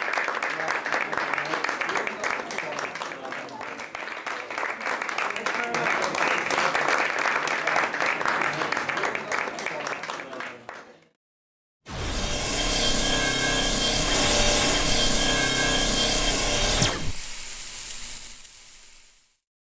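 A roomful of people applauding, fading out about eleven seconds in. After a second of silence, a short outro sting with held tones plays for about five seconds.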